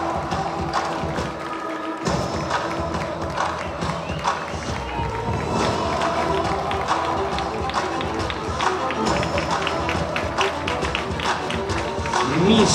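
Music with a steady beat played over the venue's sound system for a catwalk parade.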